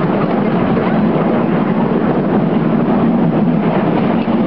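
Miniature ride-on passenger train running along its track: a steady low rumble from the moving train.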